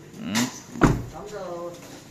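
A car door shutting with a single solid thump a little under a second in.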